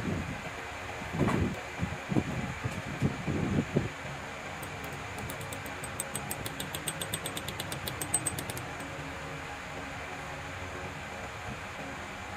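A steady mechanical fan hum, with a few low knocks in the first four seconds and a fast, even run of faint ticks for about four seconds in the middle.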